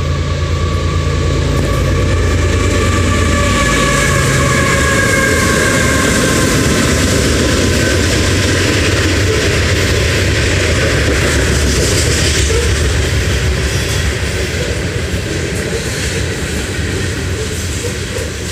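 A train passing close by on the tracks: a low drone and a whine that falls slowly in pitch over the first several seconds, then the steady rumble of the cars rolling past, easing off slightly near the end.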